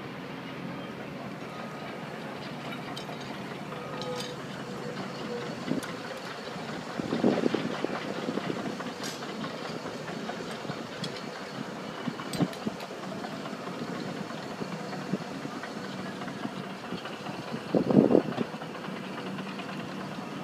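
Heavy machinery running steadily with scattered clicks and clanks, and two louder bursts of noise about seven seconds in and near the end.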